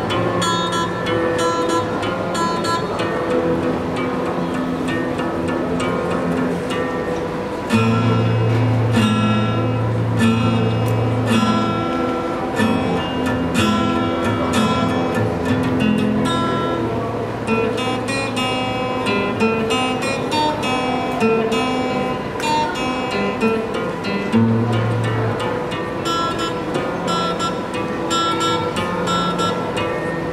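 Solo acoustic guitar played live, a mix of picked melody notes and strums, with low bass notes ringing underneath, the longest starting about eight seconds in.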